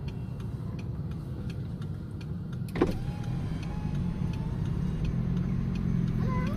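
Car engine running at low speed, a steady low hum heard from inside the cabin, with faint, evenly spaced ticking over it and a single sharp click about three seconds in.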